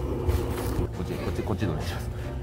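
Faint, indistinct voices over a steady low rumble of wind on the microphone.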